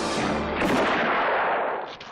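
A single loud gunshot about half a second in, followed by a long echoing tail, as the music comes to an end.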